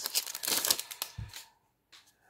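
Foil wrapper of a hockey card pack crinkling and rustling as the stack of cards is slid out, with a soft thump just after a second; it stops about a second and a half in.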